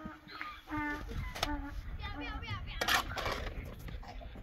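People talking, with two sharp knocks from stone-building work, a shovel and rough stone blocks being handled, about one and a half and three seconds in; the second knock is the loudest.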